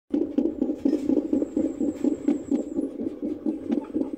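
Fetal doppler picking up a puppy's heartbeat inside a pregnant dog: a rapid, even whooshing pulse of about four beats a second.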